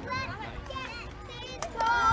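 A group of young girl cheerleaders' voices, several high-pitched voices overlapping as they call out during their routine.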